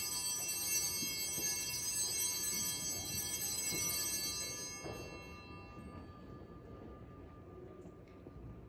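Altar bells struck once, a cluster of high, bright ringing tones that fade away over about six seconds.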